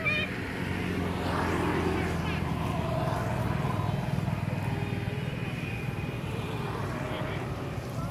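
A steady low engine drone runs throughout, with faint, indistinct voices over it.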